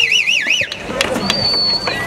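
Audience clapping and whistling. A warbling whistle comes at the start, then a long, steady high whistle past the middle.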